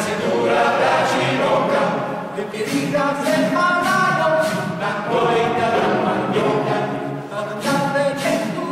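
A choir singing a cappella, several voice parts in harmony moving together through held notes.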